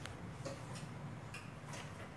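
Faint room ambience: a low steady hum with a few light, scattered clicks.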